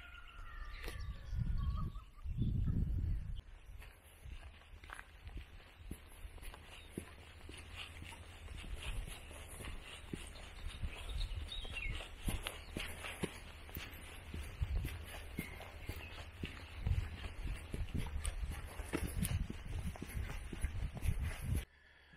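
Wind buffeting the microphone in low gusts, strongest in the first few seconds, with footsteps on a grassy dirt track. A bird calls briefly about a second in.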